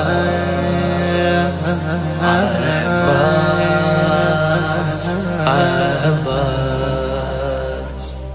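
A man chanting a Shia devotional lament (nasheed) in long, wavering melismatic lines over a sustained low drone that shifts pitch twice.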